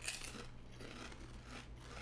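Potato crisps being bitten and chewed: a sharp crunch right at the start, then softer crunching.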